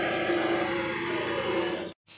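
Vevor MX400 mini lathe running steadily, a constant motor hum with a steady tone. It cuts off abruptly just before the end.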